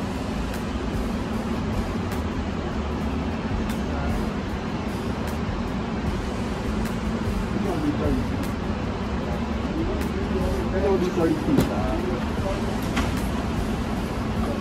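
Steady low background rumble with faint, muffled voices.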